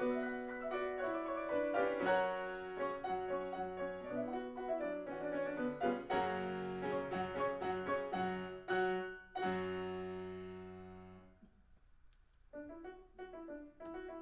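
Grand piano played four-hands: busy, dense passages, then a loud chord held and left to die away. After a brief pause, a quieter, lighter passage begins near the end.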